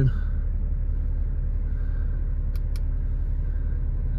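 Audi A6 3.0 BiTDI twin-turbo V6 diesel idling steadily, heard from inside the cabin as a low rumble.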